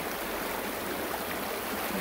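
A steady, even rushing noise with no clear events.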